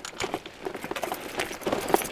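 Loaded mountain bike rattling and clattering down a rough chalk track: a rapid, irregular run of knocks from the frame, bars and bags over the bumps, with tyres crunching on the loose ground.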